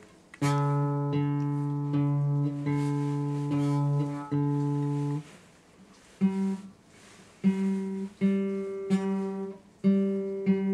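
Guitar being played: chords struck about once a second and left to ring for the first five seconds, a short pause, then shorter chords picked in a steady rhythm.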